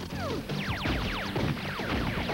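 Electronic commercial soundtrack music with a steady low bed, overlaid from about half a second in by a rapid flurry of about ten falling whistle-like zap effects for a foam-dart launcher firing.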